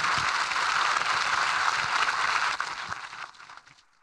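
Audience applauding, steady at first, then fading away over the last second or so.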